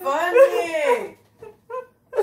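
A drawn-out, rising-and-falling vocal whine lasting about a second, followed by a few short, faint whimpers.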